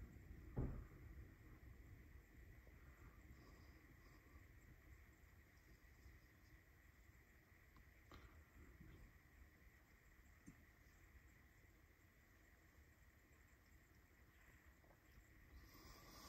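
Near silence: faint room tone, with one soft thump about half a second in.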